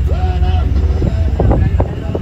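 Steady low rumble of a river ferry underway, with wind buffeting the microphone and people's voices talking in the background.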